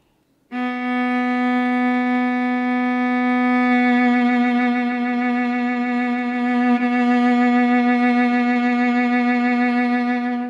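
A single long bowed note on a string instrument, starting about half a second in and held straight for about three seconds. Then an even vibrato sets in that rocks only below the pitch, making the note sound flat.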